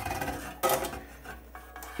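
The sheet-metal top cover of an Anatek 50-1D bench power supply being slid off its case: metal rubbing and scraping on metal, with a sharp knock about half a second in.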